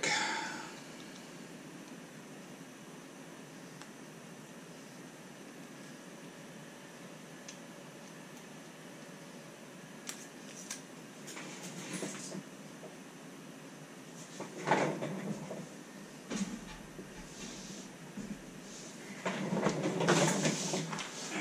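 Steady low room hiss, then from about halfway scattered clicks and rustles of small RC crawler axle parts being handled on a workbench, with a louder clatter about three-quarters of the way in and again at the very end.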